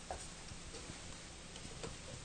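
Light frying hiss from a deep-fry pot nearly run dry of oil, with a handful of sharp clicks as chopsticks knock against the pot and turn the pieces; the loudest click comes near the end.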